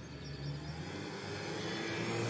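2014 Chevy Impala's engine running at idle, a steady low hum that grows gradually louder.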